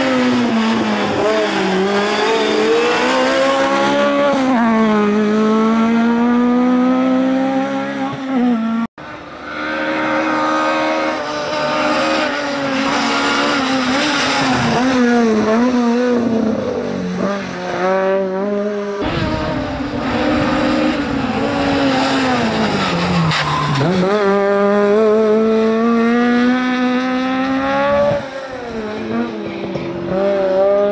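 VW Golf GTI hillclimb race car's engine run hard near the limiter, its pitch rising through each gear, dropping at the shifts and sagging into the bends. The sound comes in several stretches with sudden cuts, one of them a brief dropout about nine seconds in.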